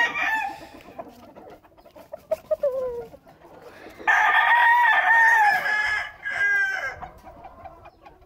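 Gamecock rooster crowing: one long, level crow of nearly two seconds begins about four seconds in and ends in a shorter trailing note. A short falling cluck comes a little before it.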